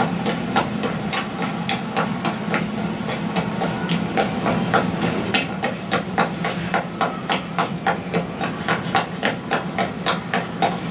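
Rapid clacking knocks, about three to four a second and slightly uneven, over a steady low hum, played as the soundtrack of a projected animated film.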